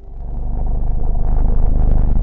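Deep drone presented as the sound of the planet Mercury: space-probe electromagnetic vibrations converted into audible sound. It fades in over the first half second and then holds steady.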